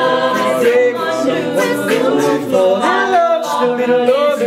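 A cappella vocal group singing a pop song, several voices in harmony with no instruments.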